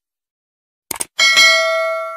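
Sound effect from a subscribe-button animation: two quick mouse-click sounds about a second in, then a bright notification-bell ding that rings and fades.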